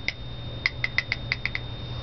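A quick run of about eight small, light clicks packed into about a second, over a steady low background hum.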